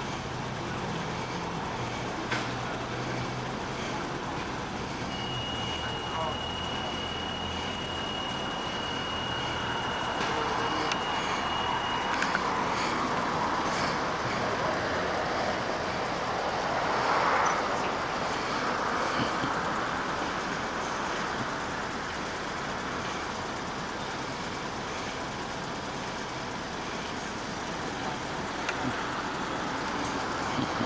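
Road traffic: engines and tyres of passing vehicles, swelling to the loudest pass a little after halfway and then fading. A low engine hum runs through the first several seconds, and a thin, steady high whine is heard from about five to twelve seconds in.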